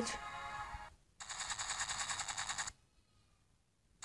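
Music from a video soundtrack trails off. About a second in, a rapid, evenly spaced rattling burst runs for about a second and a half and stops abruptly.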